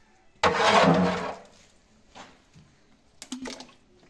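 A ladleful of yogurt poured into a cloth straining bag, splashing loudly for about a second and then fading. A few short knocks follow, as of the metal ladle about three seconds in.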